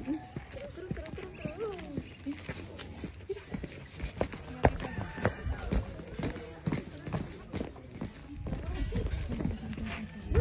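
Light, irregular taps of a young goat kid's hooves on hard-packed dirt as it leaps and scampers about, with people's voices low underneath.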